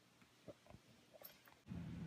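Near silence: room tone with a few faint, short ticks about half a second and a second in.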